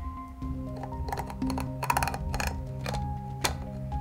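Background music with plastic clicks and short rattles as the bottom plate of a plasma globe's plastic base is pulled out, the busiest handling noise about halfway through and one more sharp click near the end.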